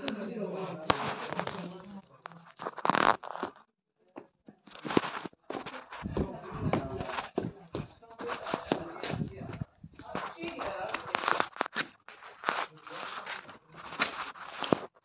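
Irregular rustling and crackling handling noise from a phone being moved about, with indistinct voices, and a brief pause about four seconds in.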